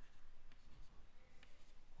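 Chalk writing faintly on a chalkboard: light scratches and a few small taps as the chalk moves across the board.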